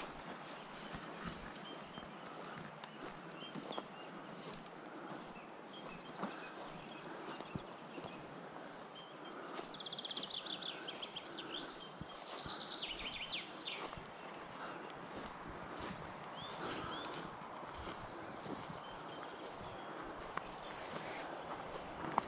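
Footsteps crunching through dry grass and fallen pine needles, with birds calling: short high falling chirps throughout and a fast trilled song in the middle.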